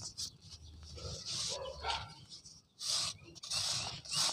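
Dry pure-cement rounds crumbling and crushing under the fingers, soft powder pouring back into the pile in short, gritty bursts with brief pauses between them.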